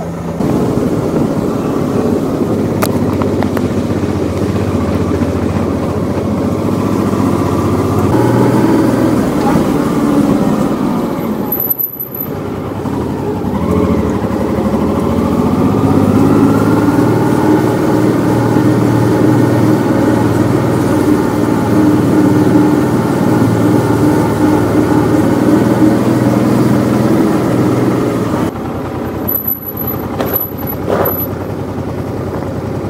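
Honda Deauville's V-twin engine running as the motorcycle is ridden, its pitch rising and falling with the throttle. The sound cuts out briefly about twelve seconds in.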